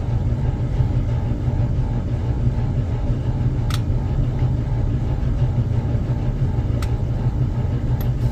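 A steady low hum or rumble with no change in level, and two faint clicks about a third and seven-eighths of the way through.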